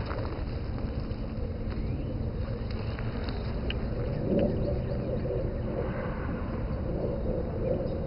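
Steady low outdoor rumble, of the kind wind or distant traffic makes on a camcorder microphone, with a few faint clicks and soft rustling in the middle.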